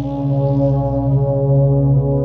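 Soothing instrumental background music with long held low notes over a deep bass.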